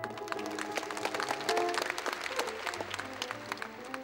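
Audience applause breaking out over the music of the ballet and thinning out near the end, with the music carrying on underneath.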